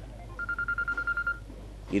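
A high electronic tone, pulsed rapidly at about ten beats a second, sounds for about a second starting about half a second in, in the manner of a phone ringing.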